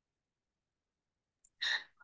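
Near silence, then near the end a short breath into a microphone, lasting about a fifth of a second.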